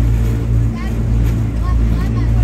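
Engine of an amphibious duck-tour vehicle running steadily as it cruises on the water, a constant low drone heard from inside the passenger cabin.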